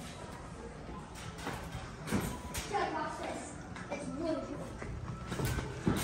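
Faint children's voices and background chatter in a large room, with a few light footsteps.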